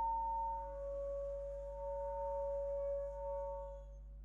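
Concert flute holding two steady pitches at once, a multiphonic, for nearly four seconds. The upper pitch dips briefly about half a second in, and both stop just before the end.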